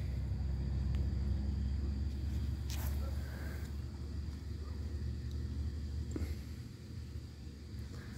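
A low steady outdoor rumble that fades away over the last couple of seconds, with a faint brief rustle or two.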